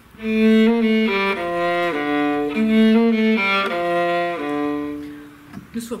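A viola played with the bow: a slow melody of held notes, one at a time, in its low register, ending on a long note that fades away about five seconds in.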